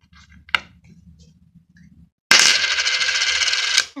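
A silver five pence coin flicked into the air with a short ringing ping about half a second in. Near the middle it lands on a hard surface and rattles loudly as it spins for about a second and a half, then stops abruptly.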